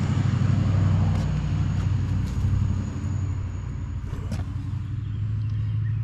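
A motor running steadily, heard as a low even rumble and hum with a faint high whine above it.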